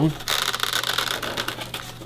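Foam RC airplane wing being pressed and seated onto the foam fuselage by hand: a rustling, scraping handling noise with a few light ticks, fading toward the end.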